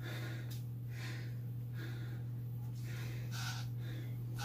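A man breathing hard in and out, about one breath a second, catching his breath mid-workout. A steady low hum runs underneath.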